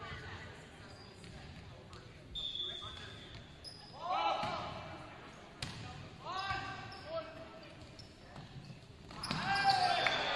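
Volleyball rally in a gym: a sharp hit of the ball rings out in the hall, among players' short shouted calls, with louder shouting near the end as the point ends.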